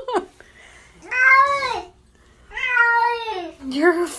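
Wet cat meowing loudly in protest at being bathed in a bathtub. Two long drawn-out meows, each rising then falling in pitch, and a third beginning near the end.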